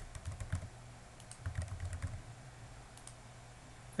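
Keystrokes on a computer keyboard in two short bursts of clicks, the second about a second after the first.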